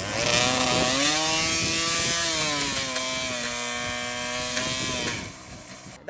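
Yamaha DT 200 single-cylinder two-stroke engine revving hard as the bike spins donuts in dirt. The pitch climbs in the first second, holds, drops about three seconds in, then fades out near the end.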